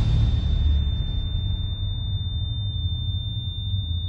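Film soundtrack drone: a low rumble under a single steady high-pitched ringing tone, the rumble easing off slightly over the few seconds.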